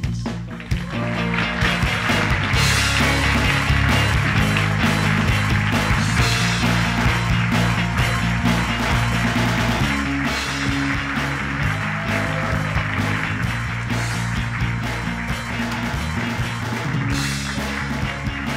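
Band music playing, with a steady bass line and drums.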